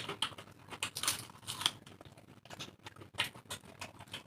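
Close-up eating sounds of khichdi eaten by hand: wet chewing and mouth clicks, with fingers working the soft rice and lentils on a steel plate, as irregular short clicks several times a second.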